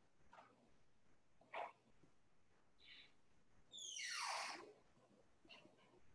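Near silence with a few faint short sounds. About four seconds in comes one brief squeal that drops quickly in pitch.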